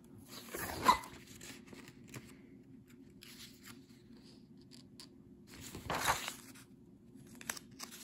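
Paper pages of a spiral-bound book being turned by hand: two quick swishes, the louder about a second in and another about six seconds in, with faint rustling and light clicks between.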